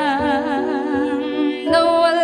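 A Tagalog love ballad: a singer holds a long note with vibrato over sustained instrumental chords, and the melody steps up to a higher note near the end.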